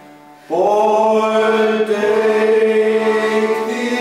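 Men singing one long held note of a song with accordion accompaniment, coming in strongly about half a second in as the previous chord dies away.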